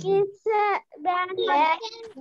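A child's high voice in several short phrases with drawn-out, gliding pitches, between speaking and singing.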